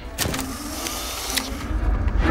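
Polaroid instant camera firing: a sharp shutter click, then its motor whirring for about a second as it ejects the print, ending in a second click.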